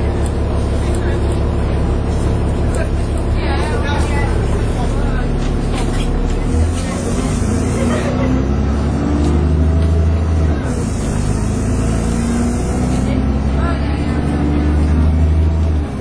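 Dennis Trident 2 double-decker bus engine heard from inside the saloon, droning as the bus drives along. Its note climbs twice as the bus accelerates, dropping back about ten seconds in and again at the end as the gearbox changes up.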